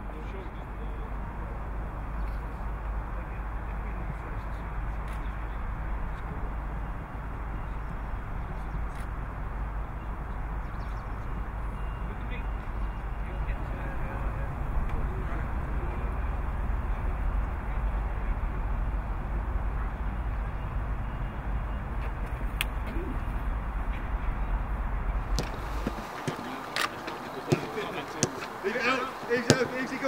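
Steady outdoor noise with a deep low rumble and indistinct voices of people talking. About four seconds before the end the rumble stops and sharp knocks and calls take over.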